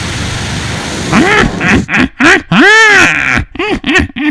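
A dragon's fire-breathing roar sound effect, heard as a loud rushing noise with a low rumble for about the first second. Then a crow's cackling laugh, 'kra-ha-ha': a string of about six harsh calls, each rising and falling in pitch, the longest in the middle.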